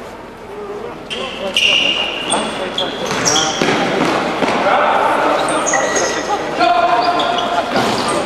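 Basketball being played in a sports hall. Shoes squeak on the court floor in many short, high squeals starting about a second in, over the ball bouncing and players' voices calling out, all echoing in the hall.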